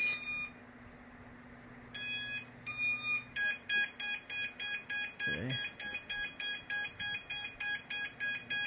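Electronic beeps from the quadcopter's flight controller as it reboots after saving settings. A short tone ends early, two short tones follow about two seconds in, and then a steady, rapid beeping starts at about two and a half beeps a second.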